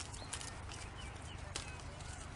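Outdoor ambience: a few scattered sharp clicks and taps over a steady low rumble, with faint short chirps.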